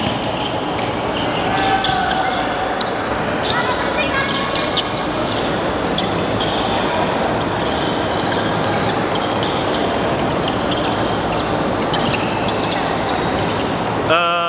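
Basketball gym ambience: a ball bouncing on a hardwood court, sharp knocks scattered throughout, amid a hubbub of players' voices.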